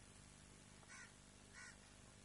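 A crow cawing faintly: two short caws about two-thirds of a second apart, over a faint low hum.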